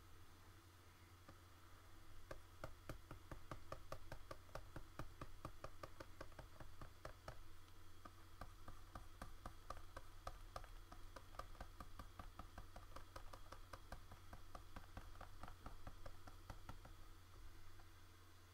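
Faint quick ticks and taps of a pen stylus on a graphics tablet, several a second, as digital colour is brushed in. They begin about two seconds in and go on until near the end, over a low steady hum.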